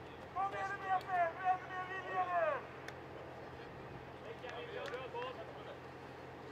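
High-pitched shouting voices: one long, drawn-out call starting about half a second in, its pitch falling away at the end after about two seconds, then fainter, shorter calls a couple of seconds later.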